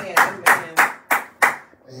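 A man clapping his hands, about five sharp claps at roughly three a second, stopping shortly before the end.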